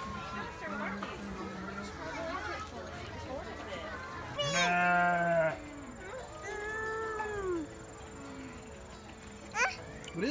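A penned farm animal bleats once, loud and steady for about a second, about halfway through, over the chatter of people and children around the pen.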